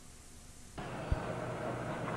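Faint hiss of blank videotape that switches abruptly to a camcorder's room sound just under a second in, as a new recording starts, with a single low thump shortly after.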